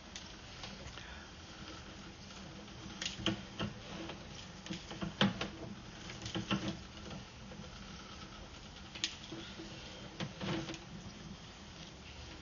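Irregular light clicks and taps over a low steady hum as a sewer inspection camera's push cable is reeled back out of a clay pipe.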